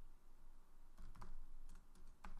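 A few keystrokes typed on a computer keyboard, faint and spaced out, mostly in the second half.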